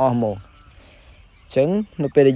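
A cricket chirping in short high trills, about three times, behind a man's voice that speaks briefly at the start and again about one and a half seconds in.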